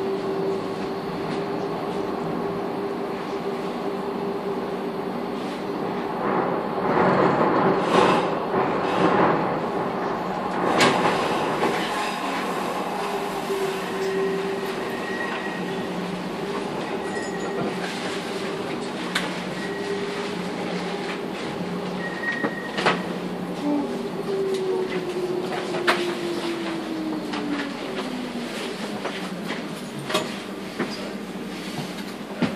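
Docklands Light Railway train running on electric traction, its motors giving a steady whine, with a spell of louder wheel rattle and squeal several seconds in. Near the end the whine falls in pitch as the train brakes to a stop at the platform.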